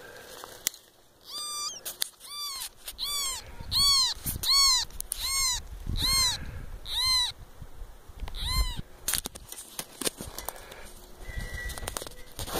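An animal's short, high calls, each rising and falling in pitch, repeated about nine times a little under a second apart.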